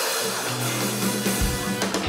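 Band music with a bass line and drum kit. Held bass notes come in just after the start, and the drums join about halfway through.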